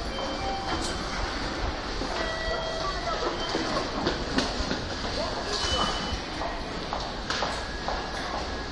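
Train station concourse ambience: a steady rumble and murmur of passengers and footsteps, with a few short electronic beeps of the kind ticket gates give.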